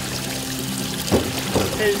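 Seawater gushing from a deck hose into a goliath grouper's mouth to keep its gills aerated, splashing onto the boat deck, under background music.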